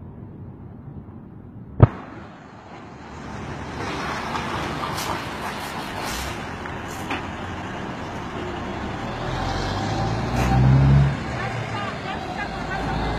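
Road traffic passing, a steady noise that builds from about three seconds in, with a heavier vehicle's low engine rumble loudest about ten to eleven seconds in. A single sharp knock comes just before two seconds in.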